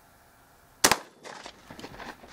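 A single shotgun shot a little under a second in, a sharp crack with a short echo trailing off, firing a fin-stabilised Sauvestre sabot slug into ballistic gel.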